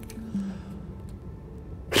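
Faint background music, then just before the end a loud rush of breath as a man blows hard through a plastic funnel holding a ping pong ball.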